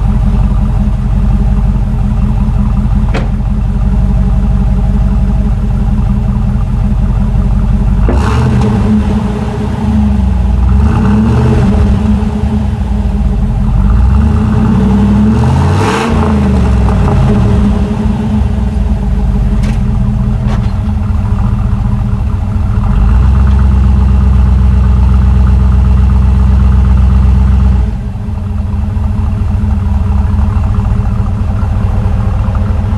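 A 1985 Camaro IROC-Z's 305 Tuned Port Injection V8 (LB9) with a Lunati Voodoo flat-tappet cam, heard from behind the car through a stock-type muffler. It idles, is revved up and down several times from about eight to eighteen seconds in, and is then held at a higher speed for several seconds before dropping back to idle near the end.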